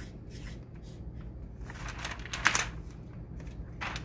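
Felt-tip marker drawing on chart paper: a run of short scratchy strokes, the loudest about two and a half seconds in and another just before the end.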